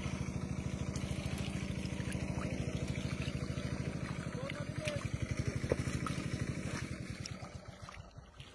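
A small engine running steadily off-camera with a fast, even pulse, fading away near the end.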